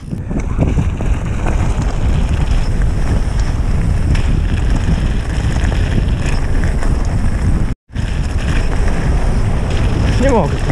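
Wind buffeting the microphone of a camera on a mountain bike riding fast downhill, over the rumble of its tyres on loose gravel. The noise rises quickly in the first second as the bike gets going, and the sound cuts out for an instant about eight seconds in.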